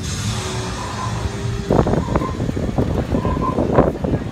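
Outdoor crowd bustle over a steady low rumble of wind on the microphone, growing busier with scattered clatter and voices from about two seconds in.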